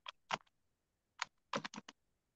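Computer keyboard keystrokes picked up over a video call: a few scattered clicks, then a quick run of four about a second and a half in.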